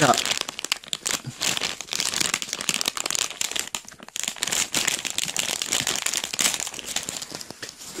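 A plastic-and-paper shipping envelope crinkling and rustling as it is worked open by hand, in a quick, irregular run of crackles.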